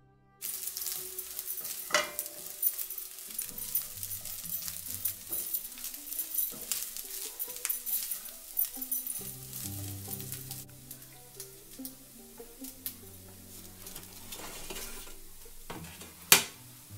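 Rice and vegetables sizzling in a hot nonstick frying pan as they are stirred with a spatula, with clicks and taps of the spatula against the pan. The sizzle starts suddenly about half a second in and eases after about ten seconds, with soft background music underneath.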